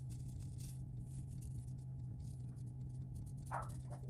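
Faint crinkling and swishing of loose gold leaf flakes being brushed off with a soft brush, over a steady low hum. A brief, slightly louder sound comes near the end.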